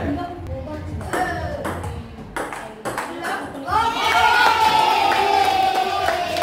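Table tennis rally: a plastic ball clicking sharply off paddles and the table several times over the murmur of voices. From about four seconds in, a long drawn-out voice, falling slightly in pitch, is the loudest sound.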